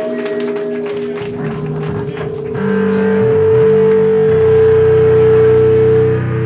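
Live band's amplified instruments before a song: a single sustained feedback tone rings steadily while electric bass notes step between a few pitches below it, and the sound gets louder about two and a half seconds in.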